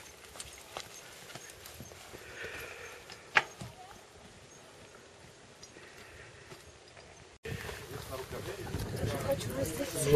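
Mountain bike rolling over a stony trail: tyres crunching on gravel with scattered clicks and knocks, one sharper knock a few seconds in, and faint distant voices. Near the end a louder steady outdoor noise takes over.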